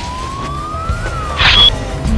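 Animated-logo sound effect: a synthetic tone sweeps up in pitch for about a second and then glides back down, over a low music bed. Near the end comes a short whoosh with a brief high ping, the loudest moment.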